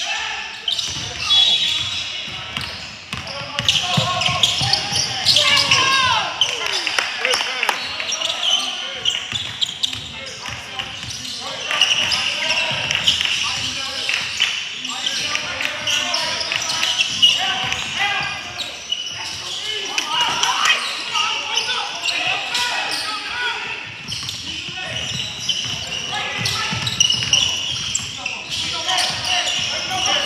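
Basketball game in play in a large gym: the ball bouncing on the court, sneakers squeaking, and indistinct voices of players and onlookers, all with a hall echo.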